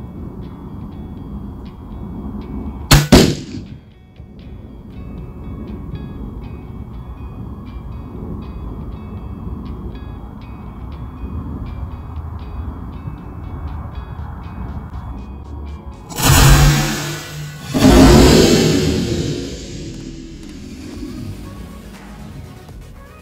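Firebird 65 exploding target detonating: a sharp loud bang about three seconds in, then two loud booms with rumbling tails near the end. Background music with a steady ticking beat runs between them.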